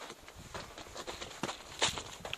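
Footsteps walking on dry, loose dirt: soft irregular crunches and scuffs, with a somewhat louder scuff near the end.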